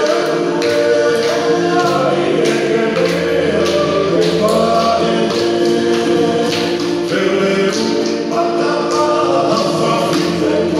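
A group of voices singing a Tongan song in harmony, with sharp beats about twice a second keeping the rhythm.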